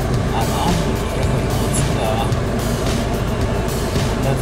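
Steady engine and road noise inside the cabin of a Land Rover Defender 110, a low rumble under a broad hiss.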